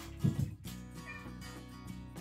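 Domestic tabby cat giving a short, low meow about a quarter of a second in, over background music.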